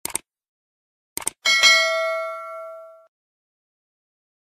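Subscribe-button sound effect: quick mouse-click sounds, two at the start and two more about a second in. Then a bright notification-bell ding rings out and fades over about a second and a half.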